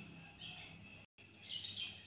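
Faint bird chirping in the background, in two short spells, with a brief drop to dead silence about a second in.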